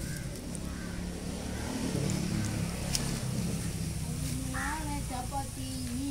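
A steady low outdoor rumble, with a person's voice speaking briefly in the last second or so.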